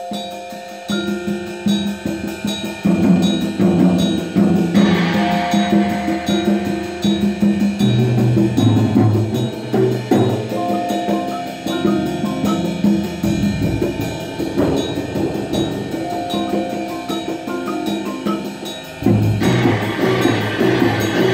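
Percussion ensemble of marimbas, vibraphones and timpani playing a piece: a rhythmic pattern of struck mallet notes, with low notes joining about eight seconds in.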